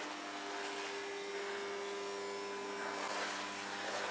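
Steady hum with a few fixed tones over an even hiss: the room tone of an empty hall.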